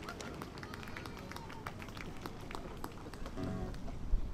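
Quiet lull between songs: sparse, irregular light clicks and taps over a faint background murmur, with a brief pitched sound a little after three seconds in.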